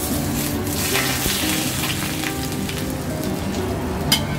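Very hot oil sizzling as it is spooned over steamed fish topped with shredded ginger and green onion, the hot oil that brings out the aroma of the ginger and onion. The sizzle starts suddenly and dies down over a few seconds.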